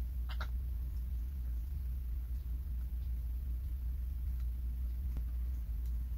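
Steady low hum, with a brief faint squeak about half a second in and a couple of faint light ticks near the end.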